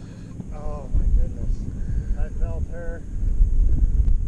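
Wind buffeting the microphone as an uneven low rumble that grows louder about a second in, under a few short, indistinct spoken words.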